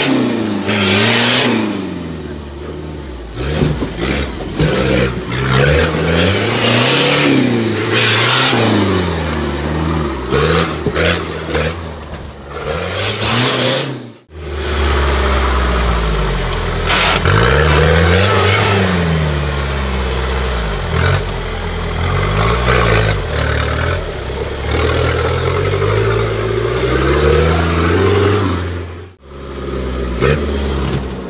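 Off-road 4x4 competition vehicle engine revving hard, over and over, its pitch rising and falling as it works over the obstacles. The sound cuts off abruptly twice: about halfway through and again near the end.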